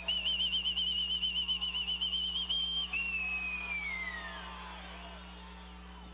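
A whistle blown in one long trilling blast, warbling quickly for nearly three seconds. A second whistle tone follows and slides slowly downward in pitch, fading out.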